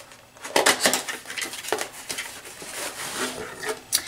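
A cardboard box being opened and a clear plastic cosmetic organizer case pulled out of it: rustling and scraping with many light plastic clicks and knocks, and a sharp click near the end.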